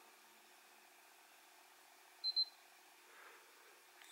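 Two quick high electronic beeps a little over two seconds in, against near silence. The beeps come as the phone app links to the RunCam Split camera over Wi-Fi, a connection signal.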